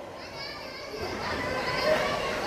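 Children's voices and chatter from an audience, with high-pitched voices coming in after a moment and growing slightly louder.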